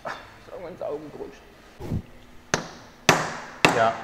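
Metal hammer blows on a car's drive shaft as it is being fitted: a dull thud, then three sharp strikes about half a second apart in the second half. A voice murmurs briefly near the start.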